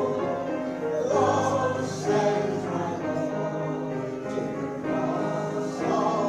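A choir singing a gospel hymn with piano accompaniment, in long held notes.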